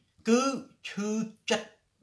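Only speech: a man talking in short phrases with brief pauses between them.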